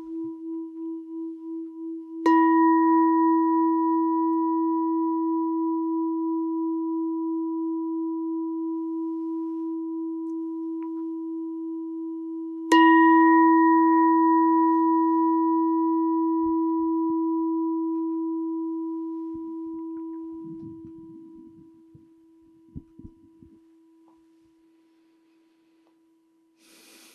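A meditation bell struck twice, about two seconds in and again about thirteen seconds in, each strike ringing on with a wavering tone that fades slowly over many seconds. It rings the close of a silent sit. A few faint knocks follow as the ringing dies away.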